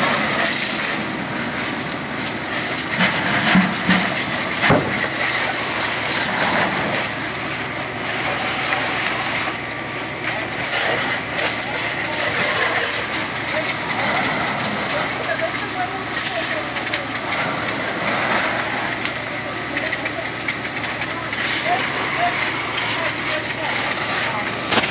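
Steady hissing of a firefighting hose jet and steam as water plays onto a burning structure, with faint voices mixed in.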